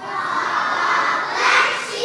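Many young children's voices shouting together, starting suddenly and swelling to a peak about a second and a half in.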